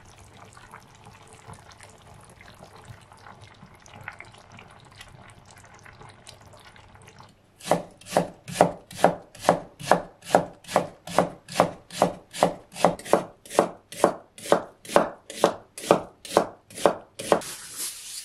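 Kitchen knife julienning a carrot on a wooden cutting board, in steady even strokes about three a second that begin about seven seconds in, after a faint bubbling simmer from a pot of napa cabbage and pork. Near the end, aluminium foil crackles as it is pulled out.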